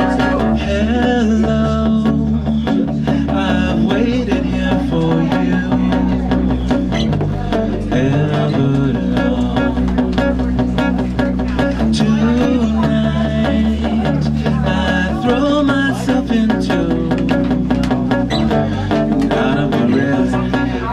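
Live acoustic band playing an instrumental passage: a fiddle melody over strummed acoustic guitar and electric bass.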